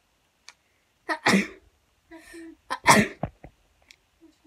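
A person sneezing twice, the second sneeze about a second and a half after the first.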